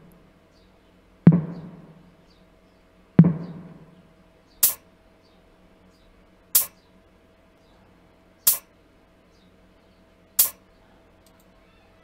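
Programmed drum samples played one at a time: a tom hits twice, each hit a low boom that dies away. Then a closed hi-hat ticks four times, evenly about two seconds apart.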